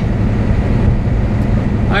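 Steady low drone inside the cab of a Volvo 780 semi truck cruising at highway speed: its Cummins ISX diesel engine running under even load, mixed with tyre and road noise.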